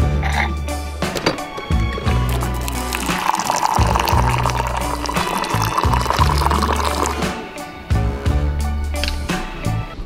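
Background music with a steady beat, over hot water pouring from a pump-action airpot into a ceramic cup, from about three seconds in to about seven.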